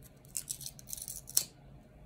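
A quick run of short, crisp clicks and scrapes from small things being handled, ending in one sharper click about one and a half seconds in.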